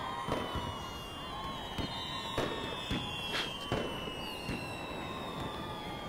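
Fireworks going off: long, slowly falling whistles over a string of sharp cracks and pops, roughly one every half second to a second.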